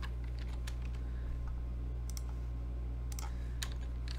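Computer keyboard keys clicking as someone types, a handful of scattered keystrokes over a steady low hum.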